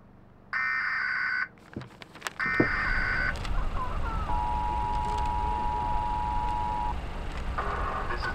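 Emergency broadcast alert tones. Two screeching data bursts of about a second each are followed by the steady two-tone attention signal, held for about two and a half seconds.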